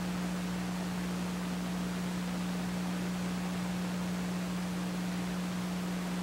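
Steady hiss with a constant low electrical hum, the background noise of an old videotape recording.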